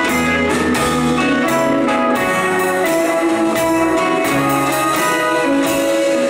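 Live rock band playing an instrumental passage without vocals: electric and acoustic guitars over a drum kit.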